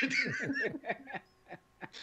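A man chuckling in a run of short laughs that trail off a little over a second in.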